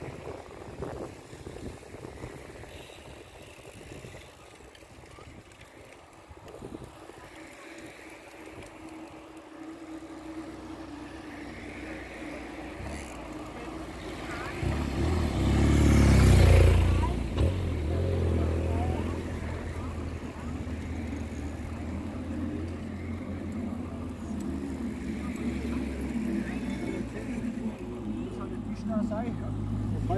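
A BMW touring motorcycle passes close by about halfway through: its engine note builds, peaks with a brief whoosh, then settles into a steady low engine hum. Before it arrives there is only the faint chatter of passing cyclists.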